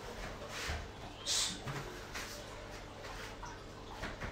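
Faint rustling and soft thuds of a barefoot person moving on a carpeted mat while doing an elbow strike and spinning back fist, with a brief swish about a second and a half in.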